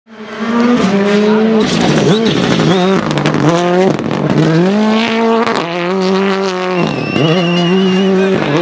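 Ford Fiesta rally car's turbocharged four-cylinder revving hard and shifting through the gears as it slides on gravel. The pitch climbs in steps, drops sharply around two seconds and again near seven seconds, and a few sharp cracks come between about two and three and a half seconds in.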